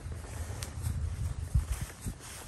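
Footsteps on an asphalt driveway, with a few soft low thuds near the end, over a light outdoor background hiss.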